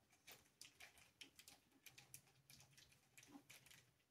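Near silence, with faint scattered clicks and light rustles from small screws and nuts being handled on a tabletop.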